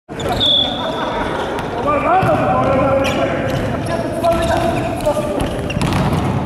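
Volleyball play in a gym hall: players' voices calling out and shouting, with a few sharp smacks of the ball being struck, echoing in the large room.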